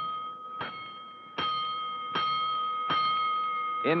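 Fire-house alarm bell struck slowly and evenly, four strokes about 0.8 s apart, each stroke ringing on into the next. It is the show's 'five bells' fire-alarm signal, played as a radio-drama sound effect.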